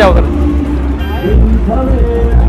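Indistinct background voices over a steady low rumble, with a brief high-pitched tone about a second in.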